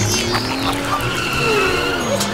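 Background music mixed with a car engine sound effect for a toy ride-on jeep moving off.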